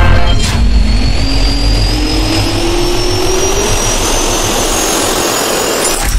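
Jet engine spooling up: a whine that rises steadily in pitch over a loud rush of air and a deep rumble.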